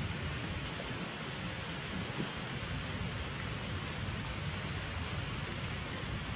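Steady outdoor background noise: an even hiss with a low rumble underneath, and a faint tap about two seconds in.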